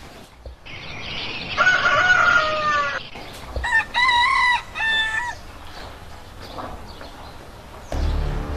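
Rooster crowing twice: first a hoarse crow, then a clearer crow broken into three notes.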